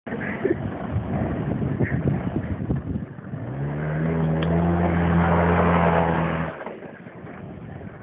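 Small motor scooter's engine revving up from about three seconds in, holding a steady pitch, then dropping away sharply near the end. Before that, rough irregular knocks and rustling.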